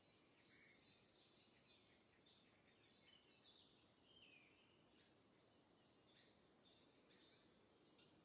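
Near silence: room tone with faint, scattered high chirps of distant birds.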